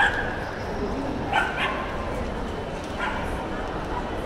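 Small dog yipping in short, high calls: one sharp yip at the start, two quick ones about a second and a half in, and a fainter one near three seconds, over a background murmur of voices.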